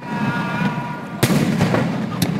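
Aerial fireworks bursting, with one sharp bang a little past the middle over a continuous crackle.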